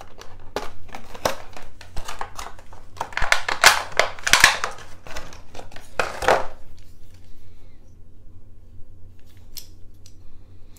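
Clear plastic blister packaging crackling and clicking as it is handled and a toy is pulled out of it: a run of quick, irregular crinkles and clicks that stops about six and a half seconds in.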